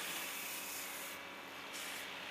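Steady background hiss with a faint low hum, and no distinct event.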